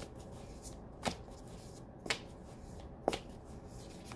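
Tarot deck being shuffled by hand, the cards brushing softly between the hands, with three crisp slaps about a second apart.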